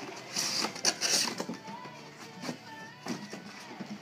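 A box cutter slitting the packing tape on a cardboard box and the flaps being pulled open, with two short bursts of tearing in the first second and a half, over background music.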